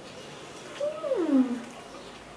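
A single drawn-out vocal call about a second in, rising slightly and then falling steeply in pitch.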